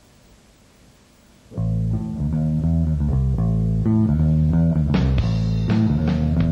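A rock band starts a song live after a quiet moment: about a second and a half in, bass guitar and guitar come in loud together, playing held low notes. Sharper hits join near the end.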